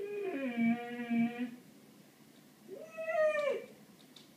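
Labrador–Weimaraner mix dog whining, excited by a bird outside. There are two long drawn-out whines: the first falls in pitch and is held low, and the second, about three seconds in, rises and then falls.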